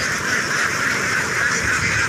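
A large flock of Javanese ducks quacking together in a steady, dense chatter.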